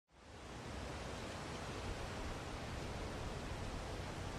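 A steady, even hiss that fades in over the first half second and holds without change.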